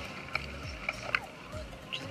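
Cannon manual downrigger paying out its cable as the weight drops, with a few light clicks over a low rumble of boat and water noise.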